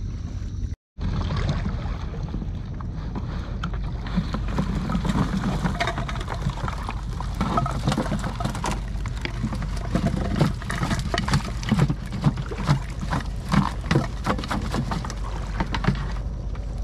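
Water, mud and small fish sloshing and splashing as a plastic container of catch is tipped out into a plastic crate, in many irregular splashes that grow more frequent towards the end, over a steady low rumble.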